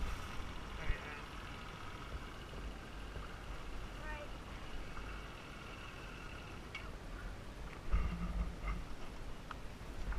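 Faint, indistinct voices now and then over a steady low rumble.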